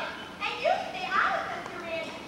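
Young actors' voices speaking stage dialogue, heard from the audience through the hall.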